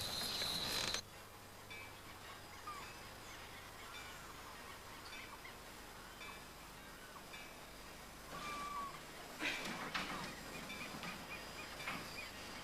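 Faint outdoor ambience with scattered short bird calls. A loud, steady, high insect trill cuts off suddenly about a second in, and two brief knocks come near the end.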